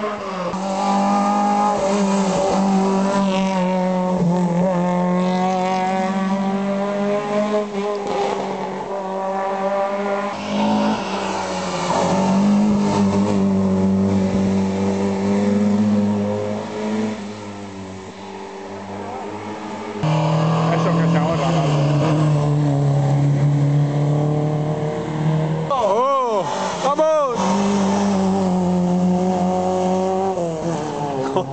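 Rally car engine driven hard, its pitch climbing and dropping repeatedly as it works up through the gears and lifts off between them. Near the end come a few quick sharp revs with crackles as it brakes and downshifts for the bend.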